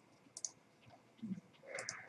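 Faint computer mouse clicks: a close pair about half a second in and another pair near the end.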